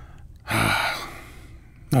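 A man's single short, breathy gasp about half a second in, tailing off over the next half second.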